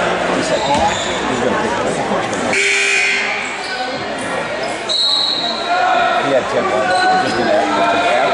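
A basketball bouncing on a hardwood gym floor, with the chatter of spectators echoing around the gym.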